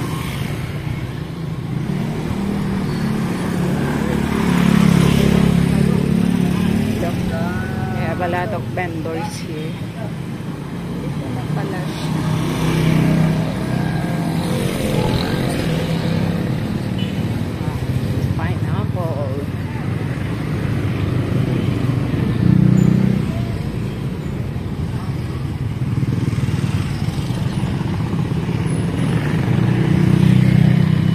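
Street traffic dominated by a motorcycle engine running and swelling louder and softer several times, with voices now and then.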